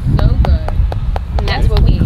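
A voice saying "so good" over a steady low rumble, with several short sharp clicks scattered through.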